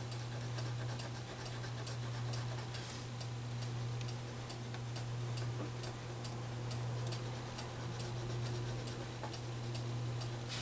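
Colored pencil scratching on paper in quick, short shading strokes, several a second and uneven in strength. A steady low hum runs underneath.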